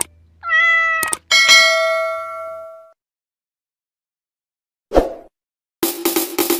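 A cat's meow, then a sharp click and a bright chime that rings out and fades, like a subscribe-button sound effect. About five seconds in a short thud, and just before the end upbeat music starts.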